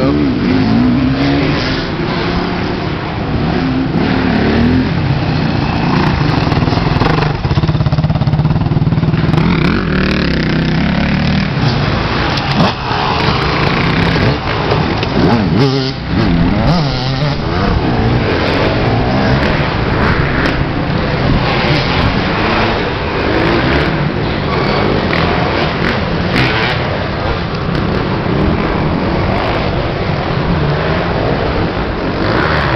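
Off-road dirt bike engines revving on and off the throttle through a tight wooded trail section, the engine note rising and falling throughout.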